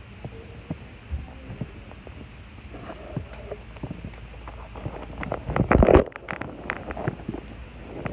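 Phone microphone handling noise as the phone rubs and bumps against skin and braids: a low rumble with scattered clicks and scrapes, and a loud rustling burst about five and a half seconds in.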